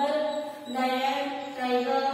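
A woman's voice reciting in a sing-song, chant-like way, drawing out each syllable.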